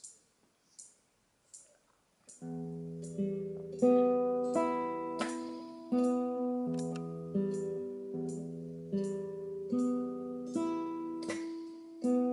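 Nylon-string classical guitar picking arpeggios, starting about two seconds in: chord notes plucked one after another and left ringing together. Faint regular ticks sound about twice a second.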